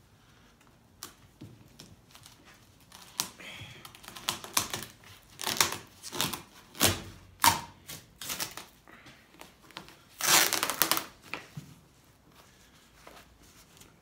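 Glued-on vinyl roof covering of a G-body Cutlass being pried up with a flathead screwdriver and pulled loose: irregular clicks and crackles, with a longer stretch of tearing noise about ten seconds in.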